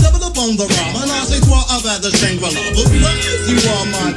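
Hip hop track with a steady drum beat, deep falling bass notes and rapped vocals.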